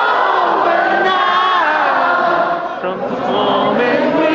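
A concert crowd singing together, many voices at once, recorded on a phone in the audience.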